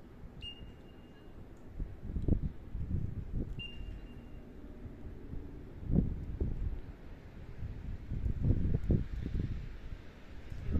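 Wind buffeting the microphone in uneven low gusts. Near the start there are two short high whistle-like tones, the first about a second long and the second shorter.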